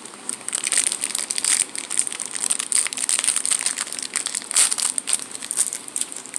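Plastic snack wrapper crinkling and crackling as it is torn open and handled, a dense run of small crackles with one louder crackle near the end.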